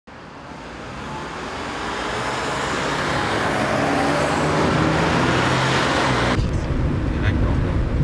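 Road traffic noise that swells gradually from quiet to loud. About six seconds in, it cuts suddenly to the low, muffled engine and road rumble inside a moving taxi's cabin.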